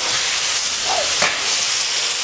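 Minced-meat lülə kebabs sizzling steadily in a hot ribbed grill pan greased with tail fat.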